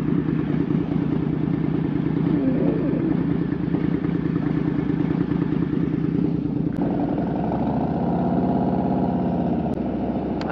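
Harley-Davidson Road King Special's V-twin idling at a stop, then pulling away about seven seconds in, its engine note stepping up as it accelerates.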